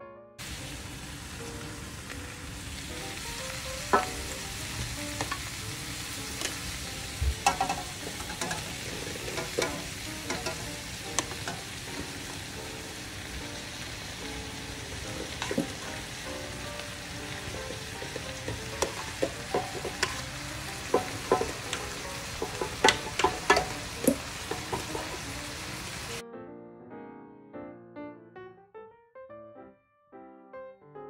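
Rice with meats and vegetables being stir-fried in a large metal pan: a steady sizzle with frequent knocks and scrapes of a slotted spatula against the pan. The frying sound cuts off about 26 seconds in and soft piano music takes over.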